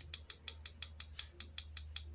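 Small tactile pushbutton on a homemade dot-matrix clock board pressed over and over, giving a quick, even run of light clicks about six a second as it steps the day setting up.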